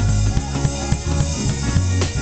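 Live band music driven by a drum kit: quick snare, bass drum and cymbal strikes over sustained bass guitar notes that repeat about every half second.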